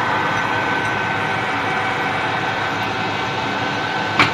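Metal lathe running at slow speed under power feed while a long-series 10 mm drill bores into grade 5 titanium: a steady machine hum with a constant thin whine.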